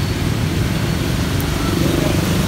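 A motor vehicle engine running steadily nearby, a low rumble, over an even hiss of rain.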